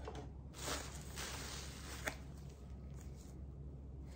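Faint rustling of plastic packaging and bubble wrap being handled, with a soft click about two seconds in.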